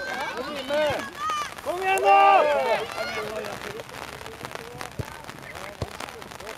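High-pitched shouts and calls from young football players and spectators, loudest about two seconds in. There are a few short, sharp thuds of a football being kicked, one near the start and two near the end.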